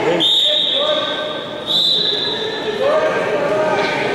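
A shrill, steady high signal sounds twice to stop the bout, first for most of a second and then briefly about a second and a half in. Voices talk across the hall around it.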